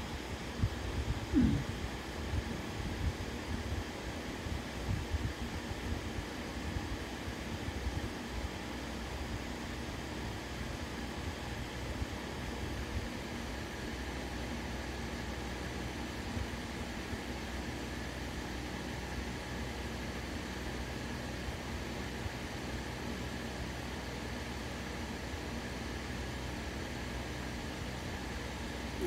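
Steady background hum and hiss, with a few soft low knocks in the first several seconds.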